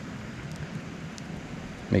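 Steady, even outdoor background rush with a few faint ticks from handling the small fish; a man's voice starts right at the end.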